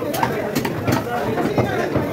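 People talking and chattering in the background, with a few short sharp knocks.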